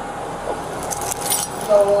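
Small metal pieces jingling and clinking together for about half a second, starting about a second in, over a faint steady hum.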